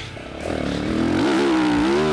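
Four-stroke Yamaha YZ450 motocross bike heard from the rider's helmet mic: the engine is low off the throttle at first, then rises in pitch and gets louder about half a second in as the throttle opens, holding a steady pull to the end.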